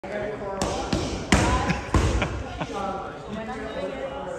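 Gloved strikes smacking into handheld focus mitts during kickboxing pad work: three loud sharp smacks about two-thirds of a second apart in the first two seconds, with a few lighter hits after them and voices talking over them.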